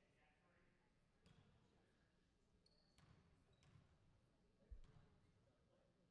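A basketball bounced a few times on a hardwood gym floor at uneven intervals, faint, with the loudest bounce about three-quarters of the way through. There are brief high squeaks between the bounces.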